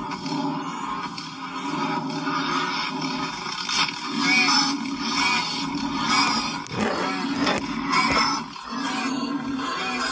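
The soundtrack of a short video played back through a phone's speaker: music over a low steady drone, swelling several times into louder rushes of noise. It starts and stops abruptly.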